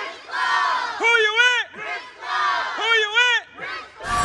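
A group of kids shouting together in unison, two long drawn-out shouts about two seconds apart, with mixed crowd voices between them.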